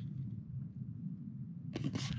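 Wind blowing through a narrow sandstone slot canyon: a faint, steady, low rush like a distant jet airplane or a flash flood coming down the canyon. There is a brief rustle near the end.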